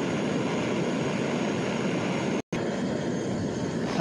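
Handheld cassette-gas torch burning steadily, its flame blowing against the side of a camping kettle to heat the water inside: an even, continuous hiss. The sound breaks off for an instant about two and a half seconds in and resumes unchanged.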